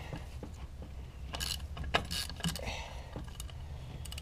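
Scattered light clicks and clinks of a hand tool and hose fittings as a car's evap purge valve is worked on by hand, the faulty valve behind a P0443 code.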